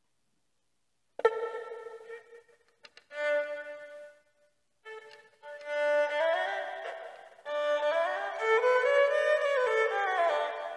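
An erhu (Chinese two-string fiddle) being bowed. After about a second of silence come a few separate notes, then a melodic phrase with sliding rises and falls in pitch, played as a check that the sound is coming through.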